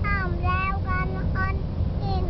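A toddler girl singing a short phrase in a high voice, pausing near the end, over the steady low rumble of the car heard from inside its cabin.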